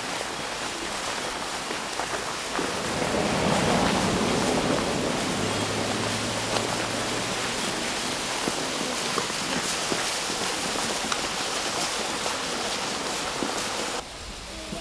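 Steady hiss with faint scattered clicks: the outdoor sound of a procession walking through snow.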